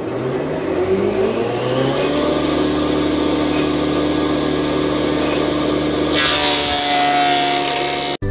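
Electric two-sided planer-thicknesser starting up: its motor whine rises in pitch over the first couple of seconds, then settles into a steady run. About six seconds in, a louder hissing cut joins as a wooden plank is fed through the cutters.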